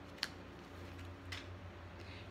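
Two light clicks of tarot cards being picked up off the table, about a quarter second and a second apart, over a faint steady low hum.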